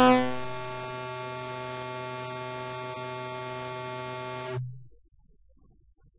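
Electrical hum from the hall's sound system: a steady buzz with many evenly spaced overtones. It drops sharply in level in the first half-second, holds steady, then cuts off near the end.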